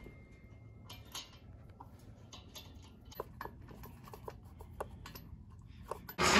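Faint, irregular small metallic clicks and taps of lug nuts being handled and threaded by hand onto the wheel studs of a car.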